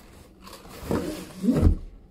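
A long, heavy cardboard box being turned over and set down on a carpeted floor: cardboard rustling and scraping, then a straining grunt and a dull low thud near the end.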